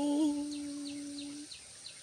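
A woman's voice holding one long, steady sung note at the end of a phrase of Tai khắp folk singing, fading out about a second and a half in. Faint short high chirps repeat about three times a second in the background.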